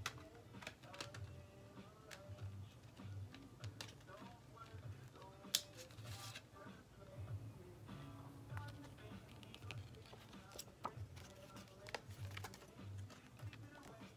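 Faint scattered clicks and rustles of a CD album's packaging being handled and opened, with one sharper click about halfway through. Faint music plays underneath.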